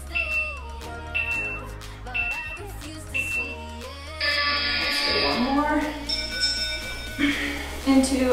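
Workout interval timer over background pop music: four short high beeps a second apart count down the last seconds, then a louder, longer tone of about three seconds sounds as the interval ends.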